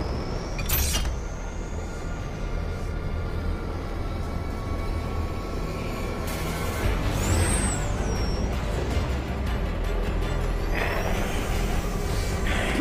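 Tense film score over a steady low rumble, with sound effects: a sharp hit about a second in, then a whoosh and a high whistle that rises and falls about halfway through.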